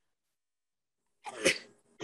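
A single sneeze, a short burst a little over a second in.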